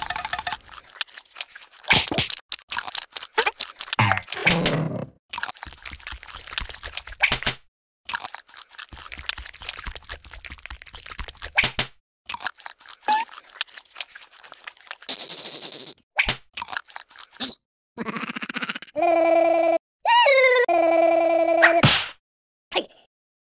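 Cartoon sound effects: a string of short clicks, crunches and knocks with brief noisy rustles between them, then a held, pitched tone near the end that breaks once and dips in pitch.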